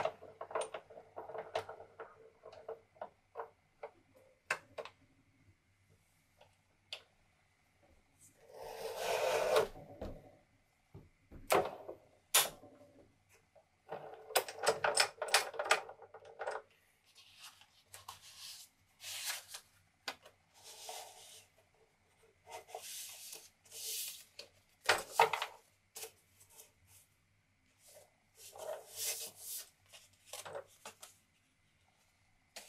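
Printed card stock being handled and trimmed on a lever-arm guillotine paper cutter: scattered clicks and taps as sheets are squared against the fence, with several longer rustling stretches of a second or two, the loudest about nine seconds in.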